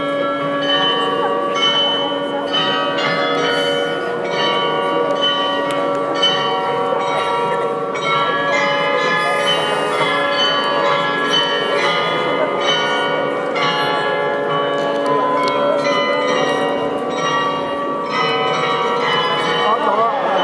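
The Rathaus-Glockenspiel's tuned bells playing a melody, a continuous run of struck notes ringing on over one another.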